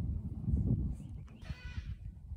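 A brief high-pitched animal call about a second and a half in, over low rumbling noise.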